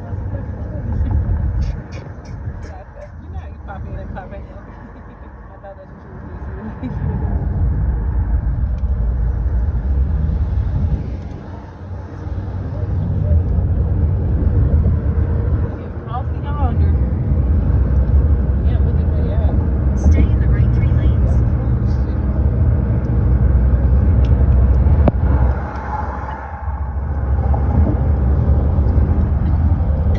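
Road and wind noise heard from inside a moving car: a steady low rumble, quieter for the first few seconds and swelling from about seven seconds in.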